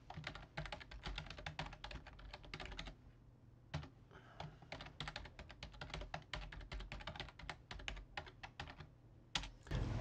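Faint typing on a computer keyboard, entering a username and then a password: a run of quick keystrokes, a pause of about a second, then a longer run, and one or two last key presses near the end.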